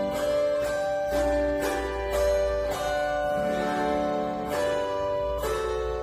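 Chromaharp (an autoharp-type zither) strummed in slow, sustained chords, each strum ringing on into the next, playing the instrumental introduction to a hymn.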